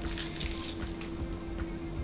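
Soft background music with a held low note, and a brief faint crackle about half a second in as a nori-wrapped rice ball is bitten.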